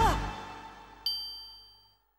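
The last chord of a cartoon theme song dies away, then a single bright bell-like ding about a second in rings out and fades to silence.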